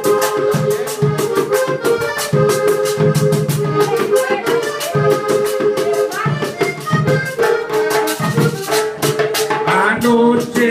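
Hohner diatonic button accordion playing a vallenato instrumental passage, a sustained melody over bass chords, with rattle-like percussion keeping a fast, even beat underneath.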